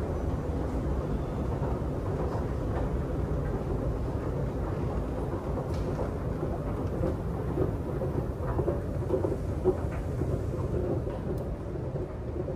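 Steady low mechanical rumble of an underground MRT station, with a faint steady hum and a few small knocks in the second half.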